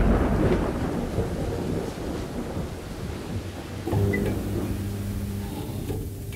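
Sound-design soundtrack: the rumbling tail of a deep boom fades slowly into a noisy hiss, then a low steady hum comes in about four seconds in, with a couple of faint short high pings.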